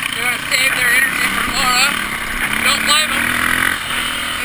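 KTM dirt bike engine running steadily while the bike is ridden along a trail, heard from the rider's own bike.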